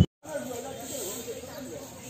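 Faint, distant voices of people talking over a steady background hiss, after a brief dropout at the start.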